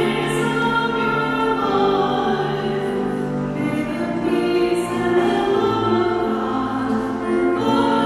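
A woman singing a slow sacred song with grand piano accompaniment, in long held notes.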